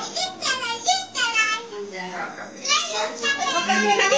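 Many children talking and calling out over one another, excited, high-pitched chatter in a small room.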